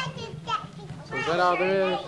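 A young child's high-pitched voice, with a loud drawn-out wavering call about halfway through, amid other brief voices.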